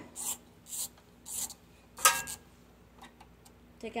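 Ratchet wrench with a 1/4-inch socket worked in short strokes: three quick rasping ratchet bursts about half a second apart, then a sharp metallic clink about two seconds in.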